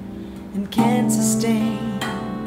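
A Rav drum (a steel tongue drum) and an electric guitar playing a slow ballad. The previous notes fade out, then a new chord is struck a little under a second in and rings on steadily.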